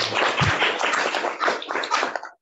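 Audience applauding: many hands clapping together in a dense, steady patter.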